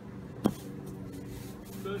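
One sharp knock about half a second in, from a rope throwing line weighted with a piece of wood as it is thrown, over a steady low hum.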